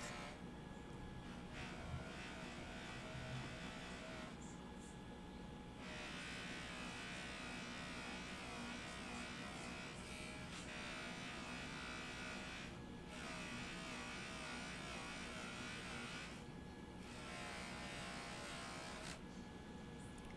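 Faint, steady whir of a JoolTool bench polisher spinning a buffing wheel as a sterling silver cuff is held against it; its pitch wavers as the piece is pressed and eased off, and the higher part of the sound drops away briefly a few times.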